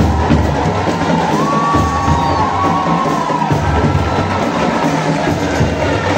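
Marching band (fanfarra) of drums and brass playing as it parades, with a crowd cheering and shouting around it.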